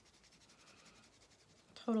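Felt-tip washable marker rubbed quickly back and forth across soft Model Magic modeling clay, a faint rapid scratching.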